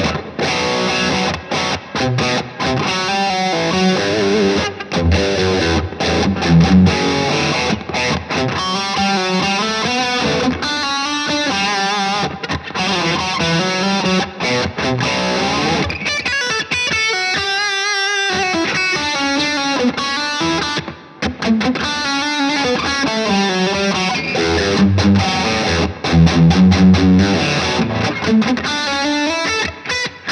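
PRS SE Custom electric guitar with humbucker pickups played through a distorted amp: continuous riffs and lead lines, with bent and wavering notes in the second half.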